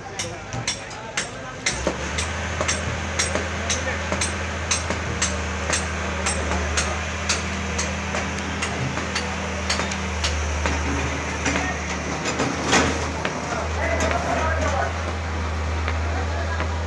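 Caterpillar hydraulic excavator's diesel engine running steadily as it demolishes a brick-and-concrete building. Its bucket knocks and breaks masonry in a run of sharp knocks about two a second, with one louder crash about thirteen seconds in, under the chatter of a watching crowd.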